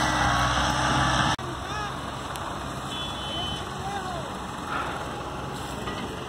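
A farm tractor's engine runs steadily as it hauls a trailer loaded with cut sugarcane, then cuts off abruptly about a second and a half in. After that there is a quieter steady outdoor hiss with a few faint, brief high chirps.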